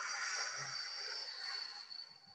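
A long breath out through the mouth during the lift of an abdominal crunch, an airy hiss with a faint whistle that fades near the end.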